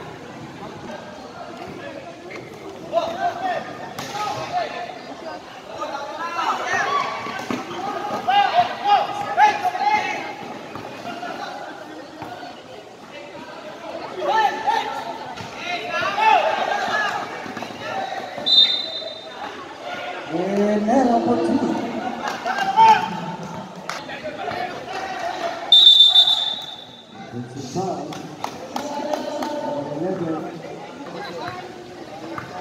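Courtside voices shouting and calling during a basketball game, with a basketball dribbled on the hard court. Two short, high referee whistle blasts stop play, one past the middle and a louder one about three-quarters through.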